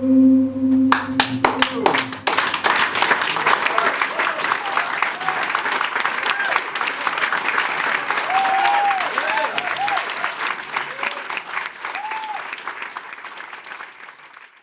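The band's last held note dies away about two seconds in as the first claps start, then a small audience applauds with voices calling out, the applause slowly thinning out near the end.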